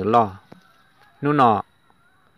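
A man's narrating voice speaking in a tonal language: the end of a phrase at the start, then one short word about a second later, with pauses in between.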